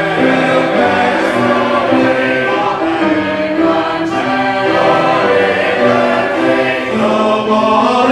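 Congregation of men and women singing a Southern gospel convention song in parts from songbooks, several voices holding notes together in harmony.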